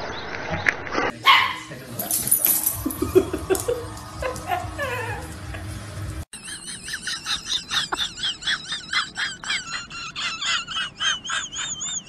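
Dogs vocalizing over a few quick cuts: scattered barks and falling whines, then a fast run of short, wavering high-pitched cries, about three a second, through the second half.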